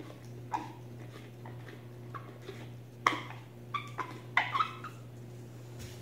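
Handling noises from a rubber GP-5 gas mask as its canister filter is screwed onto the 40 mm threaded port: a few short squeaks and clicks, the loudest about three seconds in and again around four and a half seconds, over a steady low hum.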